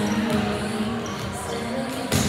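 Volleyballs being hit and bouncing on a gym floor during warm-up, with music playing in the background.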